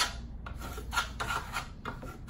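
Steel Venetian plaster trowel scraping black marmorino plaster across a sample board in repeated rasping strokes, about two a second.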